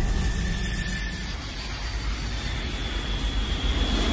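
Jet airliner engines running at high power as the plane climbs: a steady rumble with a faint high whine.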